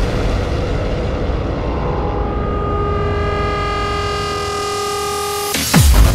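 A hardstyle track in a breakdown. The kick drum drops out, leaving a low rumbling bass, and from about two seconds in a held synth chord swells in. The hard, pitch-dropping kicks come back in near the end.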